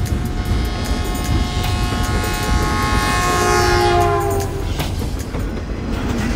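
Diesel locomotive passing close by with a low rumble and wheel clicks over the rail joints. Its multi-tone horn sounds for about three seconds, dropping in pitch just before it stops.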